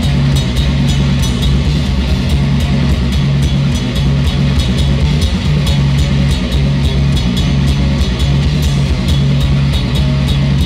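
A live rock band playing loud: drum kit with a steady beat of cymbal strokes over electric guitar and held low bass notes.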